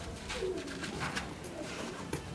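A bird cooing low, with a few light handling ticks.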